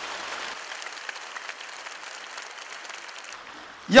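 A large seated audience applauding, the applause slowly dying down.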